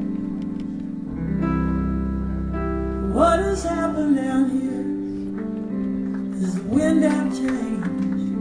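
Live band playing a slow song introduction: held chords underneath, with a sliding melodic phrase coming in about three seconds in and again about seven seconds in.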